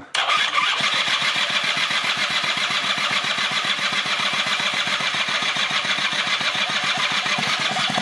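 Small two-stroke scooter engine of a 1996 Rexy 50 being spun over by its starter with the carburettor removed, turning over steadily in a fast, even rhythm; it begins just after the start. The engine turns over freely and pumps through its transfer ports, which the mechanic takes as a sign that the engine itself is in order.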